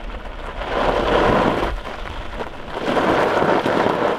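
Loose gravel crunching and crackling on a trail, swelling twice, over a low rumble.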